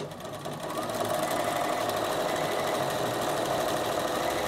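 Bernina sewing machine stitching a dense satin stitch, a zigzag at its widest width with the stitches packed close. It speeds up over the first second, then runs steadily.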